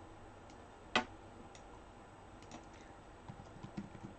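Typing on a computer keyboard: a single click about a second in, then a run of quick key taps starting near the end.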